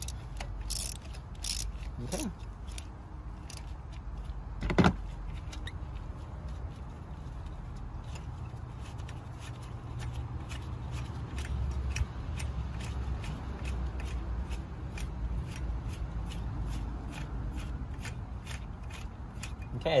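Ratchet wrench and socket extension loosening a stubborn spark plug in a Honda Insight engine: a sharp knock about five seconds in, then faint, evenly spaced ticks, a few a second, over a low steady rumble.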